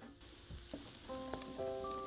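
Wire whisk stirring a thin tempura batter made with sparkling water in a glass bowl: wet stirring and the fizz of the bubbly batter, with a few light clicks. Soft music with held notes comes in about a second in.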